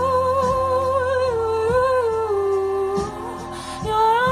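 A woman's voice singing a long, wordless held note with vibrato into a microphone, dipping lower partway through and stopping about three seconds in, over a backing track.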